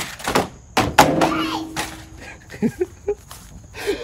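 Toy RC monster truck clattering over a jump and landing: two sharp thuds about a second in, then a few lighter knocks.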